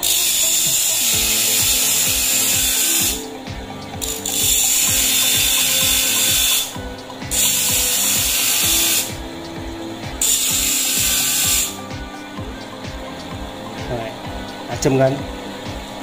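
Steel screwdriver tip being ground to a point on an abrasive disc spun by a repurposed electric water-pump motor. There are four hissing grinding passes of one to three seconds each, with short pauses between them.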